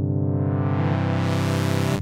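Yamaha Reface CS synthesizer holding one low note while its filter cutoff is swept open, the tone growing steadily brighter, with a shift in its colour about a second in.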